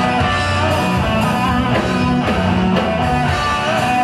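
Live band playing a slow blues: electric guitar over bass guitar and drums.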